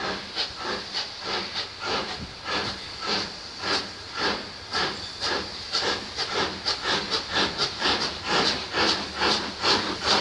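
Steam locomotive working hard, its exhaust beats coming at about three a second, quickening and growing louder.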